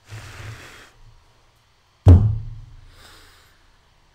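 A metal multitool put down hard on the desk: one loud thump about two seconds in, with a low boom that dies away over a second or so. A short rush of rustling noise comes before it, at the start.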